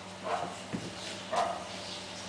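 Five-week-old Pembroke Welsh Corgi puppy giving two short barks about a second apart, with a soft knock between them.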